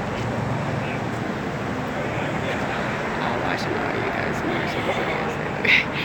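Steady running noise of a moving shuttle bus heard from inside the cabin: engine and road noise with no sudden events.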